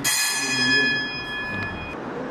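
A bell-like chime struck once, ringing on in several high tones and fading slowly, then cut off abruptly just before the end.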